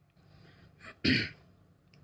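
A man clearing his throat once, a short hard burst about a second in, just after a quieter breath. A faint click near the end.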